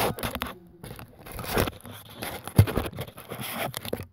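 Handling noise from a handheld phone: fingers and sleeve rubbing and scraping over the microphone in an irregular, scratchy run that cuts off suddenly at the end.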